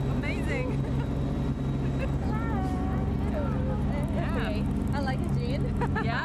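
Amphibious tour boat's engine running with a steady low hum, with passengers' voices talking over it.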